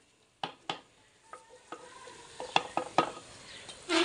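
Metal ladle scraping and knocking against an earthen clay cooking pot while stirring potatoes and green beans frying in masala, over a faint frying sizzle. The knocks come irregularly, with two sharper ones in the second half.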